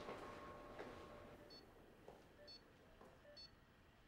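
Faint electronic beeps of a hospital patient monitor, short and high-pitched, repeating about once a second from about a second and a half in.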